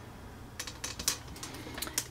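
Several light, irregular clicks and ticks, about half a dozen over a couple of seconds, over a steady low room hum.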